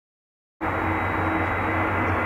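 Steady rumble and hiss of an Airbus A380 on final approach, cutting in abruptly about half a second in after silence.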